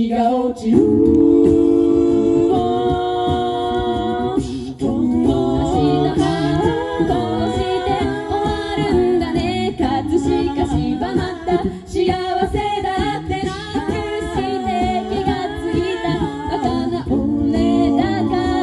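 A mixed male and female a cappella group of five singing into microphones over a PA. It opens with a held chord for about four seconds, then moves into shifting harmony lines with a low rhythmic layer underneath.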